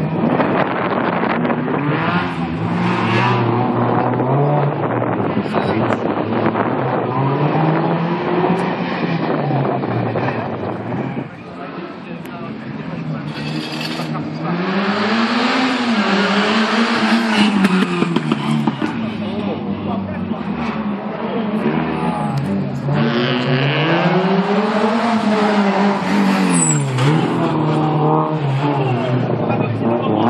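Competition car engine driven hard around a tight course, its pitch repeatedly rising under acceleration and dropping as the driver lifts off, every two to three seconds. The engine drops away briefly about eleven seconds in, then climbs again.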